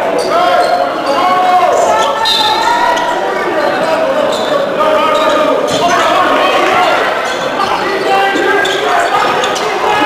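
A basketball bouncing on a hardwood gym floor, with players and spectators calling out in the echoing gym.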